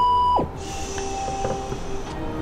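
A steady electronic beep tone lasting about half a second and ending in a quick downward slide, followed by a faint steady hiss with quiet tones underneath.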